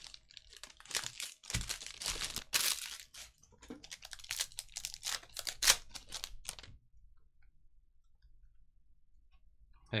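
Shiny foil wrapper of a Panini Hoops Premium Stock basketball card pack being torn open and crinkled by hand: a dense crackling that runs for about seven seconds, then stops.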